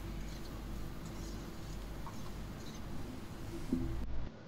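Flat metal spatula stirring and scraping potato sabzi around a metal kadhai, with faint scratchy scraping over a low, steady background hum.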